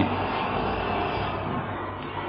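Steady background hiss with a low, constant hum, heard in a pause between a man's spoken phrases.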